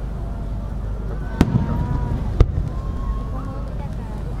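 Aerial fireworks going off: two sharp bangs about a second apart, each followed by a low rumble.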